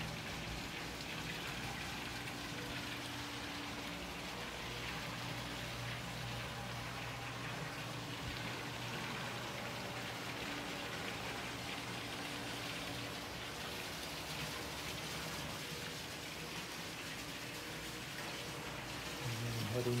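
Pool water feature: water spilling from a raised wall into a swimming pool, a steady splashing rush, with a faint low hum underneath.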